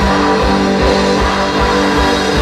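Live pop-rock band playing loud on stage, with guitar chords held over a steady low drum beat.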